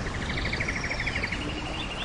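Rainforest birds trilling and whistling over a steady background hiss: a fast trill of about ten notes a second for the first second or so, then a higher trill takes over, with a few short whistles above.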